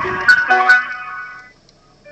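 Telephone hold music playing through a mobile phone's speakerphone, a tinny stepped melody that fades out about a second and a half in.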